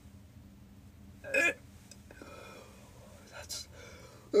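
A person's short vocal burst about a second in, followed by a couple of faint brief vocal sounds near the end.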